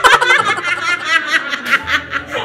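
A woman laughing hard in quick repeated bursts of 'ha-ha-ha', about seven a second.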